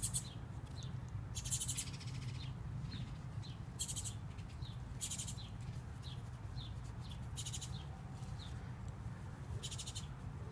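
Small birds chirping outdoors: short falling chirps repeat about twice a second, mixed with brief high buzzy trills every second or few. A low steady rumble runs underneath.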